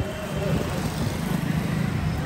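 Busy street ambience: passers-by chatting over the low, steady running of nearby traffic.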